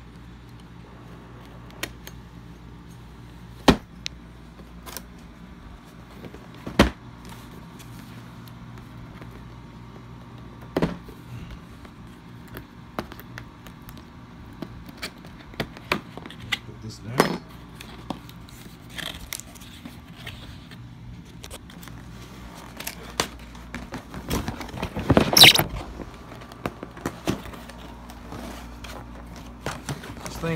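Hands and a knife working at a cardboard toy box to free what is packed inside: scattered sharp clicks and knocks of cardboard and plastic, and one louder rustling scrape lasting about a second, some three-quarters of the way through, over a steady low hum.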